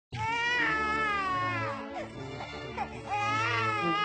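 A baby crying in long wails that slide down in pitch: one from the start, shorter softer cries in the middle, and another long wail from about three seconds in.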